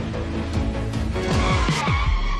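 Theme music, joined a little past halfway by a car-skid sound effect: screeching tyres with pitch sweeps falling fast.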